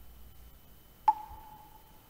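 A single ding about a second in, one clear tone that fades away over most of a second: the chime of an animated intro logo.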